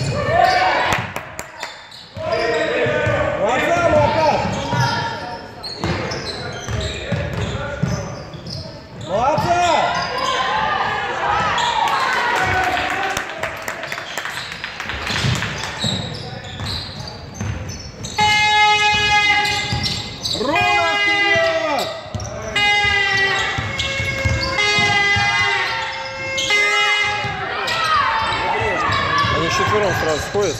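A basketball being dribbled and bouncing on a hardwood gym floor during a game, with players' and spectators' voices echoing in a large hall.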